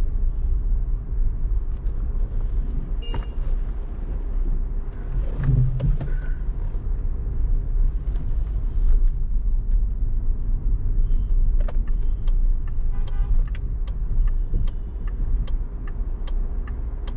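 Steady low road and engine rumble heard from inside a car driving through city streets, swelling briefly about five seconds in. From about twelve seconds in, a turn-signal indicator ticks evenly, a little over twice a second.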